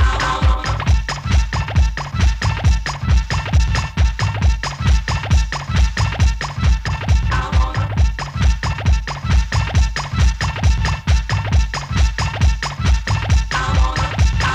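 Ghetto house DJ mix from a 1995 cassette: a fast, steady kick drum and heavy bass, with turntable scratching over the beat. A short mid-range sample comes back near the start, about halfway through and near the end.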